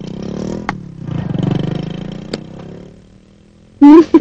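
A motor vehicle engine, rising and falling in two swells as it revs or passes, with two sharp knocks over it. A voice starts right at the end.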